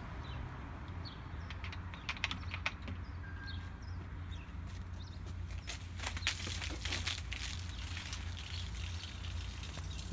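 Mentos-and-Fanta soda geyser: a 2-litre bottle of Fanta fizzing as it spouts foam, with crackling spatter loudest about six to seven seconds in. A few sharp clicks come about two seconds in, over a steady low rumble.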